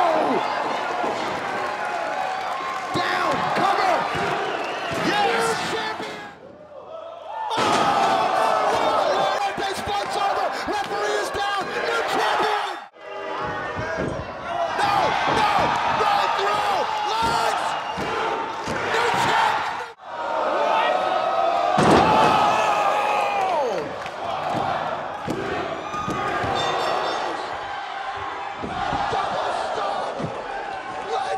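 Pro wrestling match audio: a live crowd cheering and shouting, with bodies slamming onto the ring mat. The sound is made of several short clips cut together, with brief drops in level at the cuts, about every six or seven seconds.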